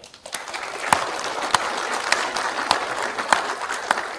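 Audience applauding. It swells within the first half-second, with louder single claps standing out every half-second or so, and dies down near the end.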